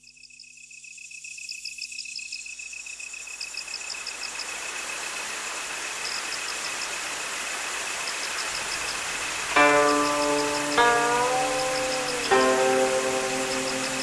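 A hiss of background ambience fades in with a steady high tone and quick high ticking. About two-thirds of the way in, a Chinese zither plucks three notes that ring on, the second bent downward in pitch.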